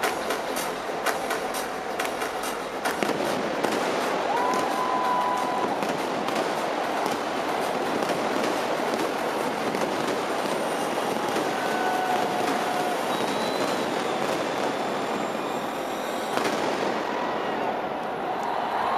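A large arena crowd cheering and whistling in a dense, steady roar, with scattered clapping over the first three seconds and a few separate held whistles standing out above it.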